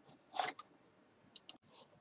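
Faint handling sounds of coloured-pencil work on paper: a soft swish, then two quick light clicks close together about a second and a half in.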